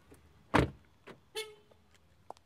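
A car door slams shut with a loud thump, and a moment later a car gives a short honk-like beep, as when it is locked by remote.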